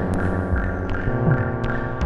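Live electronic music from Moog Subharmonicon and DFAM analog synthesizers: a dense drone of many stacked steady tones over low throbbing pulses. A short falling pitch sweep comes about a second in, with faint clicks scattered through.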